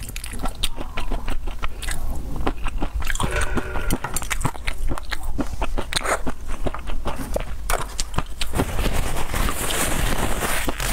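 Close-miked mouth chewing spicy chili-oil-coated food, with many short wet clicks and smacks. Near the end comes a papery rustle as a tissue wipes the mouth.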